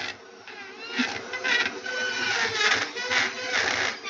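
Dremel rotary tool running with a heat-treated three-point cutter bit, grinding into hard, dense Pacific yew wood. The grinding rises and falls unevenly as the bit bites in.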